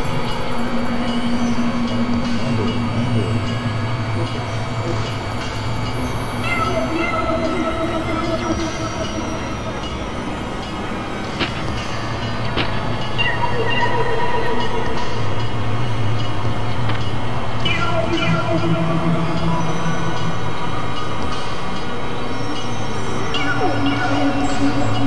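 Experimental electronic drone music: several sustained, wavering synthesizer tones at different pitches layered over a dense noisy bed, each shifting to a new pitch every few seconds. The level sags slightly around ten seconds in and swells again a few seconds later.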